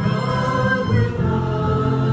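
A praise and worship band playing a song, with several voices singing together over steady low notes.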